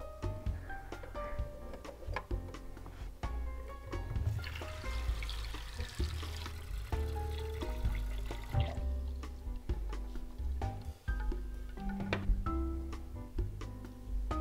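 Background music throughout; about four seconds in, water from a kitchen tap runs into a pot of eggs for about four seconds.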